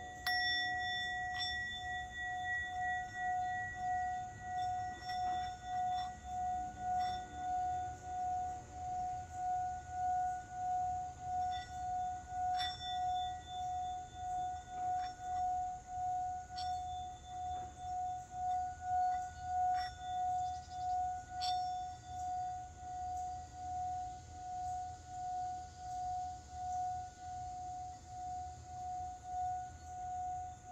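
Small metal singing bowl struck with a wooden mallet at the start, then rubbed around its rim so it sings one steady ringing tone that swells and fades a little under twice a second. Faint ticks of the mallet against the bowl come now and then.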